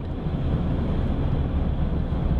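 Steady low rumble of a car being driven, heard inside the cabin: engine and road noise while under way.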